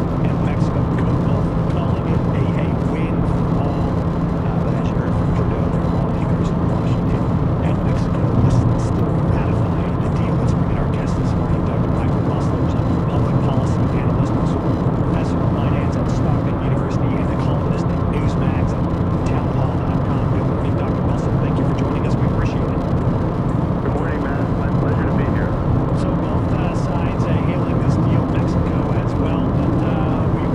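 Steady road and engine noise inside a car cabin while driving at speed, with faint talk from the car radio underneath.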